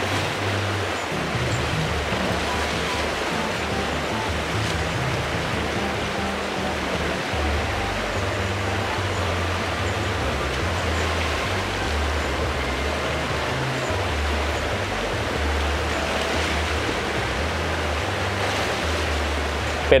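Steady rush of a shallow river running over rocks, with background music and its low bass line underneath.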